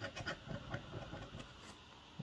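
A metal coin scraping the latex coating off a scratch-off lottery ticket in quick, faint, irregular strokes.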